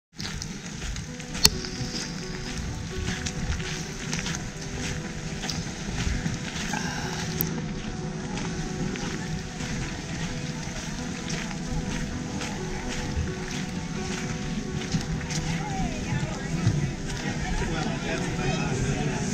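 Steady outdoor rain ambience, with indistinct voices of people nearby and a sharp knock about a second and a half in.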